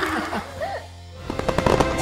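Laughter trailing off, then about a second in a closing jingle starts: music with rapid crackling and popping of fireworks sound effects.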